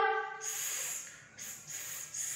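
A woman's voice making two drawn-out hissing 'sss' sounds, the sound of the letter S. They start about half a second in and again about a second and a half in.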